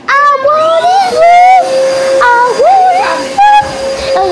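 A child's wordless singing close to the microphone, in short phrases of high notes that slide up and down. About a second in, a steady single tone comes in under the voice and holds.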